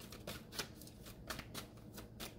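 Tarot cards being shuffled and handled: a quiet, irregular run of soft card flicks and clicks, several a second.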